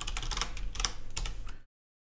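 Typing on a computer keyboard: a quick run of keystroke clicks, as a password is entered. It cuts off abruptly to silence near the end.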